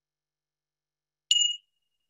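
A small meditation bell struck once, about a second and a half in, giving a clear high ringing tone that fades slowly; it is rung to close a meditation practice.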